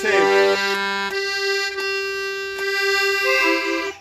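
Piano accordion playing held chords in a chamamé phrase. The low note drops out about a second in, and a new note joins near the end.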